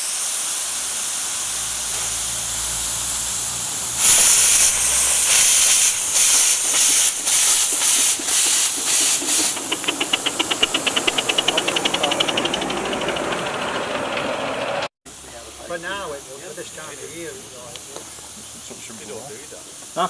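Live-steam model Ivatt 2-6-2 tank locomotive with its cylinder drain cocks open, blowing steam forwards strongly. A steady hiss turns, about four seconds in, into a loud blast of exhaust beats that quicken into rapid chuffs, then settles back to a steady hiss.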